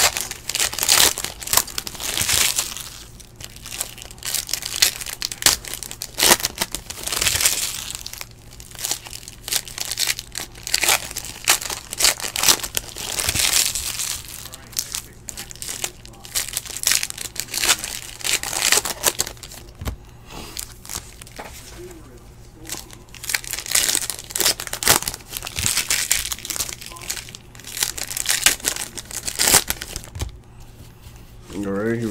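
Foil trading-card pack wrappers crinkling and tearing as packs are opened by hand, in irregular bursts with short quieter gaps between.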